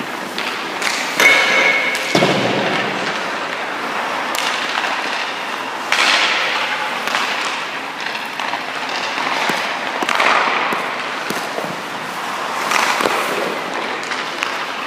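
Ice hockey goalie's skate blades scraping and carving the ice in repeated pushes and stops, about four hissing swells, mixed with the thud of leg pads dropping onto the ice.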